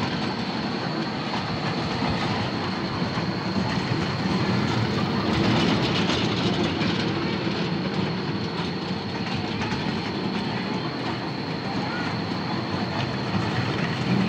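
Children's electric ride-on toy train running along its steel loop track, a steady rattling rumble of small wheels on the rail, with a constant high whine.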